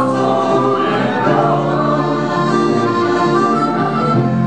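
Accordion playing sustained chords with a group of voices singing together.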